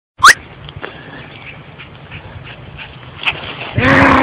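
A sharp, quick rising chirp just after the start, then a faint steady background. Near the end a loud, drawn-out call from a dog begins, rising and falling in pitch.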